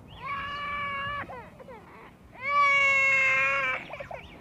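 A toddler crying out in two long, steady wails, the second louder than the first, each breaking off with a short downward fall.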